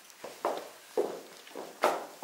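Footsteps on bare wooden floorboards: four steps about half a second apart, the last one the loudest.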